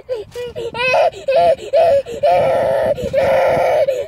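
Goat bleating in a car: a run of short bleats, then two long, harsh bleats in the second half.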